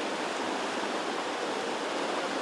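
Whitewater rapids rushing in a steady, even roar of water.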